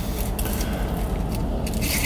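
Aluminium foil burger wrapper crinkling and rustling as it is unfolded by hand.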